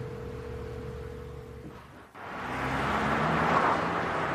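City street traffic, swelling to a steady rush about two seconds in as a car drives up, with a low engine note beneath. Before that, a quieter low hum with a single steady held tone.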